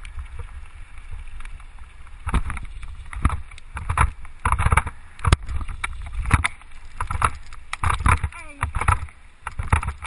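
Mountain bike rolling fast down a rough gravel track, heard from a handlebar-mounted camera: a steady low rumble of tyres and wind, with irregular loud rattles and jolts as the bike hits bumps and stones.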